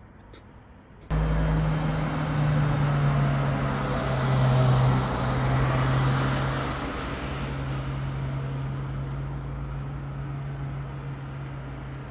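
A motor vehicle's engine running. The steady low hum starts suddenly about a second in, is loudest around five seconds in, then slowly fades.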